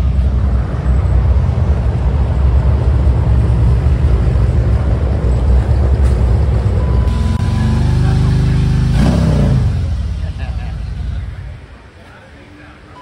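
Harley-Davidson V-twin motorcycle engine running with a loud, deep rumble. About seven seconds in, it revs up, holds, and falls back just after nine seconds, and the sound fades near the end.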